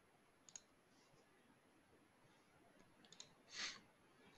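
Near silence: faint room tone with a few small clicks, one about half a second in and a couple just after three seconds, then a short soft hiss near the end.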